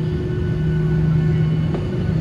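Steady cabin drone inside a Boeing 737-800 on the ground: a constant low hum with a low rumble underneath.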